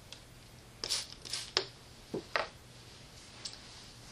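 A handful of short rustles and scrapes from a plastic soap bottle and a washcloth being handled as soap is put onto the cloth, bunched in the first half.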